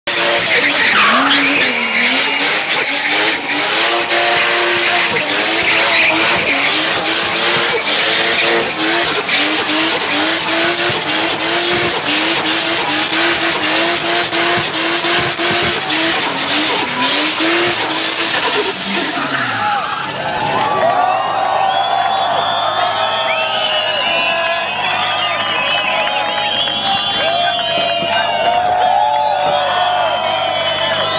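A Toyota Supra drift car doing donuts: engine held high in the revs, pitch wavering as the throttle is worked, with tyres screeching for about nineteen seconds. Then the revs fall away, and a crowd cheers, whistles and whoops.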